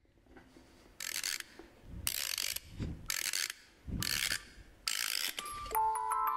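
Five short rasping noise bursts, about one a second, some with a dull thump under them. Near the end, chiming music like a glockenspiel begins.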